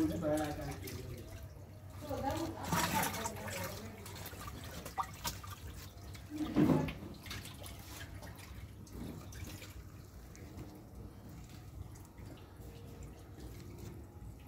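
Faint, indistinct voices off and on over a low steady hum, with no clear other sound.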